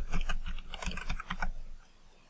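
Computer keyboard keys clicking in a quick run as a shell command is typed out and entered, the keystrokes stopping shortly before the end.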